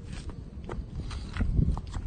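Sidewalk chalk scratching and tapping on rough asphalt as short lines are drawn, with a few light knocks and a soft low thump about one and a half seconds in.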